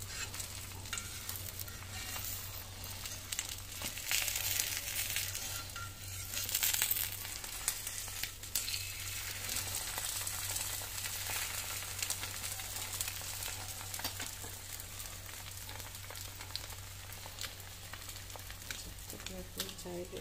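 An egg frying in a little oil on a black iron tawa: steady sizzling and crackling, loudest a few seconds in and dying down toward the end.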